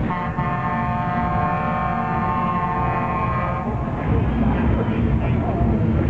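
A steady horn-like tone held for about three and a half seconds, then stopping, over a low rumble and the chatter of people.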